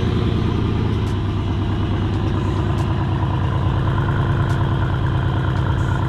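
Mercedes-AMG CLS 63 S's 5.5-litre twin-turbo V8 idling with a steady, even low note and no revving.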